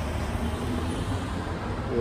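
Steady low rumble of road traffic passing along a street.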